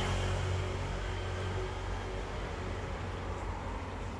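Steady background noise: a low hum under an even hiss, with no distinct events.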